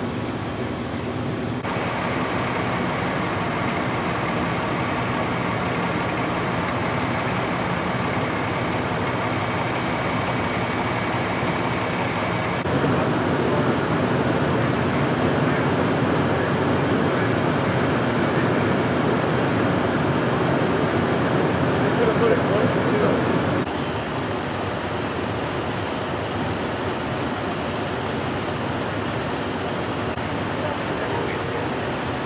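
Steady engine noise of running fire apparatus. It grows louder about a third of the way in and drops back about two-thirds of the way through.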